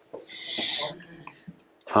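A person's short, breathy vocal burst about half a second in, lasting about half a second.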